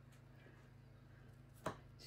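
Near silence with a faint steady low hum, and a single short knock near the end.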